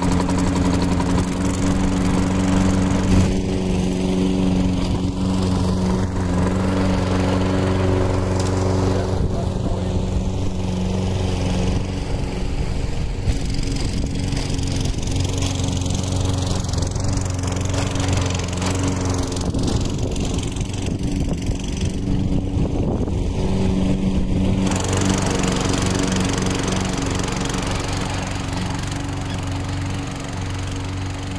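Walk-behind rotary lawn mower's small gasoline engine running steadily as it cuts grass, growing a little fainter near the end as the mower moves away.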